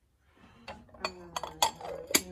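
Porcelain lid clinking against a tiered blue-and-white porcelain box as it is fitted back on: about four light taps, each with a short ring.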